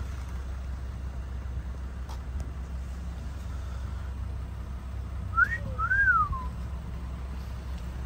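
A two-part wolf whistle about five seconds in: a short rising note, then a longer note that rises and falls away. Under it runs the steady low hum of an idling vehicle engine.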